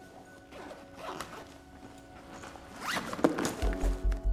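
Film soundtrack: a steady droning music bed with two rising swishes, a sharp hit a little after three seconds in, then a low pulsing beat, about four a second, starting just before the end.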